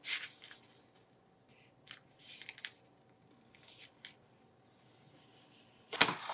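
Faint, brief rustles and taps of paper and card being handled, a few scattered over the first four seconds, as a strip of paper is fitted inside a handmade journal's spine.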